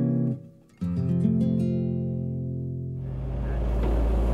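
Acoustic guitar music sting: a strummed chord cuts off just after the start, and another is struck about a second in and rings out. About three seconds in, a steady low engine rumble of heavy machinery takes over.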